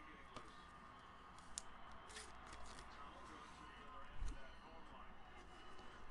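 Faint rustles and a few light ticks of trading cards in plastic sleeves and top loaders being handled, over quiet room tone.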